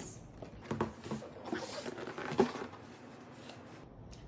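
Hard-shell zippered carrying case being handled over a cardboard box and set down on a table: rustling with a few knocks, the loudest about two and a half seconds in.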